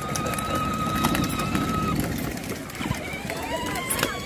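Crowd of people and children moving along a road, with scattered voices and a steady bustle of movement. A long, steady high-pitched tone sounds over it for about the first two seconds, and another begins near the end.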